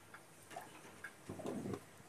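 Faint, irregular small pops and ticks from liquid heating in a pot of chicken wings and potatoes, with a short, fuller burst about a second and a half in.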